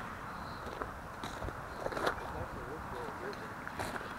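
Footsteps on gravel and dry grass, a few faint irregular crunches over a steady outdoor hiss.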